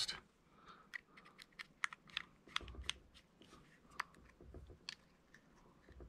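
Faint, scattered small clicks and light scrapes from a small screwdriver and hands handling a pistol, as the screwdriver is set to the grip screws.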